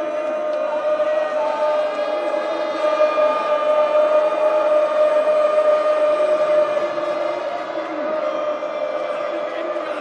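A packed football stadium crowd chanting and singing over a steady, sustained note, louder in the middle stretch.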